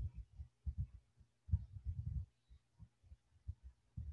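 Irregular low, muffled thumps and puffs picked up by a headset boom microphone, over a faint steady electrical hum.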